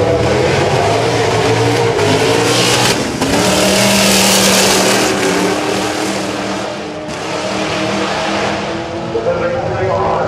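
Two Holden Commodores, a VK and a V8 VY SS, accelerating hard side by side from a standing start, their engines loudest as the cars pass close by about four seconds in, then fading as they pull away down the track.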